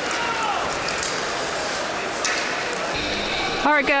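Steady ice hockey arena ambience during live play: crowd noise and the sound of play on the ice, at an even level. Near the end it cuts to a man speaking.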